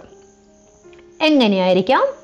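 A woman's voice pausing, then saying a long drawn-out "eh" about a second in, with faint steady background tones underneath.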